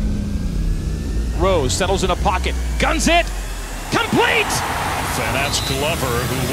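Short shouted calls from players on a football field, several in quick succession, over a low rumble. The crowd noise swells near the end.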